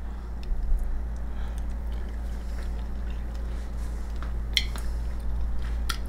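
A person chewing a mouthful of hot casserole with small wet mouth clicks, two sharper clicks coming late, over a steady low electrical hum.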